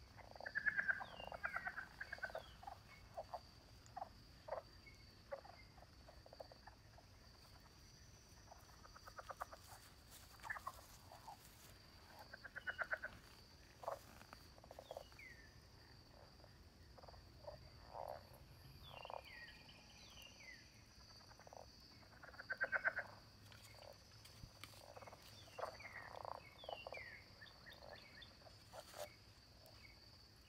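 Evening woodland chorus: a steady high insect trill from crickets or katydids, with frogs calling in repeated bursts of short pulsed croaks that are strongest about a second in, midway and again about three quarters of the way through.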